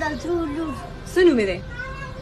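A young child's high voice, with a loud cry that falls in pitch a little over a second in.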